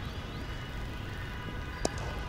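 Cricket bat striking the ball: one sharp crack near the end, over steady low background noise.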